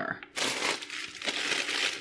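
Plastic food packaging crinkling and rustling as it is handled, starting about a third of a second in and going on continuously.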